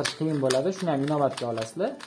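A man's voice over a run of quick plastic clicks from a 9 cm QiYi 3x3 speed cube whose layers are being turned by hand.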